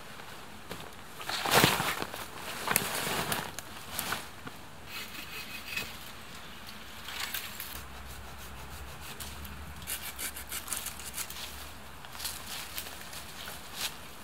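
Dry leaf litter and brush rustling and crunching under hands and feet, with wood rubbing and scraping as a long stick is handled. The loudest scrape comes about a second and a half in, with scattered small cracks and rustles after.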